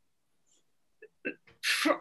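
About a second of dead silence, then a few faint mouth clicks and a short breathy laugh from a woman, just before she speaks.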